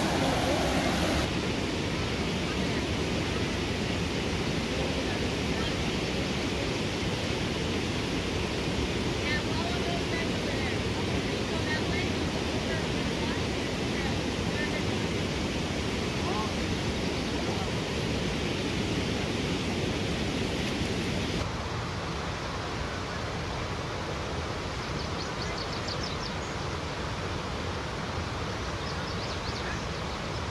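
Shallow creek water rushing over rocks, a steady hiss. About two-thirds of the way through it drops abruptly quieter and thinner.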